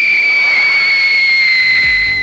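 A loud whistling tone, held for over two seconds and gliding slowly down in pitch, over a faint hiss: a sound effect from an old McDonald's TV commercial.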